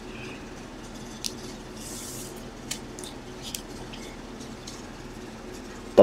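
Low room hum with a few faint, sharp plastic clicks and a brief soft rustle as a sleeved trading card is handled and set into a hard plastic card holder.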